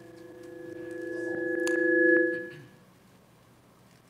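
A sustained ringing tone of several steady pitches swells louder for about two seconds and then fades out, with a couple of faint clicks at its peak.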